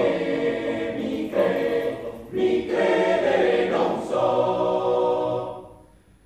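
Male choir singing a cappella in sustained, close-harmony chords. There is a brief breath about two seconds in, and the phrase fades away near the end.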